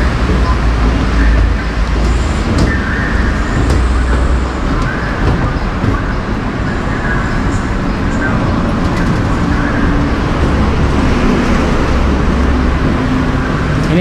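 Steady traffic noise from a busy city road: a constant low rumble.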